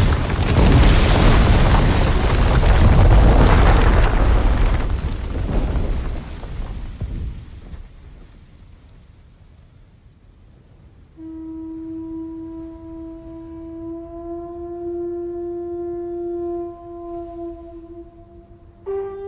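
Deep rumbling crash of collapsing rock, loud at first and dying away over the first seven seconds or so. After a lull, a shell horn is blown in one long steady note from about eleven seconds in.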